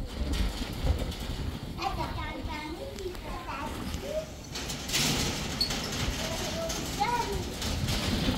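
Young children's voices talking and calling out in short high-pitched phrases.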